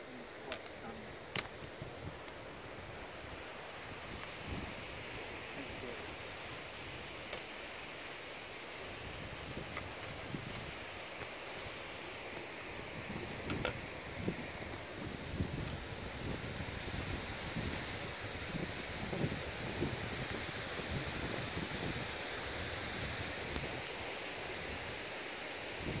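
Wind, with gusts buffeting the microphone that get heavier about halfway through, and a few sharp clicks near the start.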